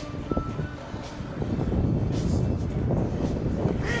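A low rumbling noise that grows louder about a second and a half in.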